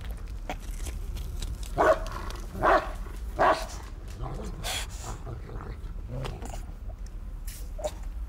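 A gagged young woman's muffled cries through duct tape: three loud, short, strained cries about two seconds in, then quieter whimpers and moans. A low steady hum runs underneath.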